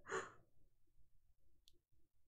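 A woman's short breathy exhale, the tail end of a laugh, fading out within half a second. Then near silence, with one faint click about two-thirds of the way through.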